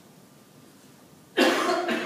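A person coughing, loud and close, starting suddenly about one and a half seconds in, against quiet room tone.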